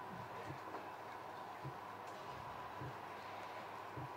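Quiet room tone: a steady hum and hiss with a faint high tone, broken by scattered faint low sounds.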